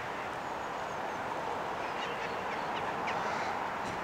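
Outdoor ambience: a steady background hiss with scattered faint bird calls.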